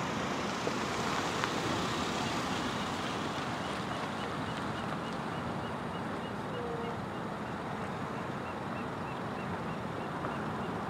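Steady wind noise with a low, even rumble underneath. From about three and a half seconds in, a faint high chirp repeats about three times a second.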